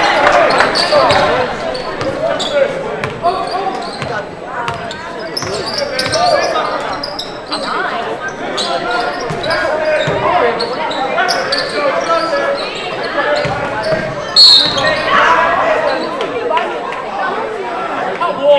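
Basketball game sounds in a large, echoing gym: a steady mix of crowd voices and shouts over the thud of the ball being dribbled on the hardwood court. About fourteen and a half seconds in there is one sharp, loud sound, the loudest moment.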